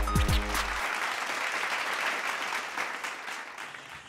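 Hip-hop music ends under a second in and gives way to applause, which fades out steadily over the next three seconds.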